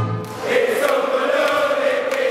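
Crowd of football fans singing a chant together, many voices holding one line. It comes in about half a second in, as a music bed cuts off.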